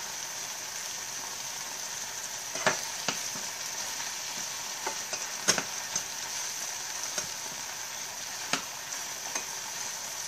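Chopped red onion, garlic and mushrooms sizzling steadily in olive oil in a frying pan as they soften, stirred by a utensil that knocks against the pan a few times, the sharpest knock about halfway through.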